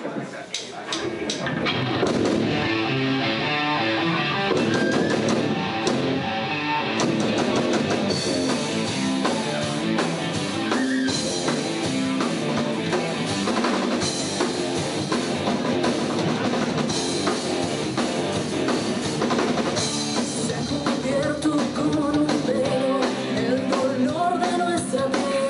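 A live rock band playing electric guitars and a drum kit, building up over the first two seconds and then playing steadily.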